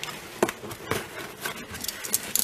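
Cardboard shipping box handled with gloved hands: a few light taps and scrapes against the cardboard, about half a second and a second in.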